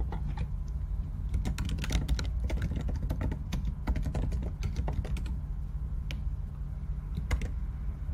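Typing on a computer keyboard as an email address is entered: a quick run of keystrokes, densest from about a second and a half to five seconds in, then a few scattered keys. A steady low hum runs underneath.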